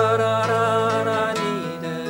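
Nylon-string classical guitar playing held chords, with a voice humming or singing along without words, and a short laugh about one and a half seconds in.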